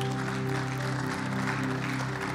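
Background keyboard holding soft sustained chords, with a light patter of congregation applause over it.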